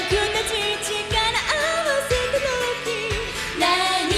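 Female vocalist singing a Japanese pop song live with full band backing, the melody wavering and gliding, over a kick-drum beat that lands about once a second.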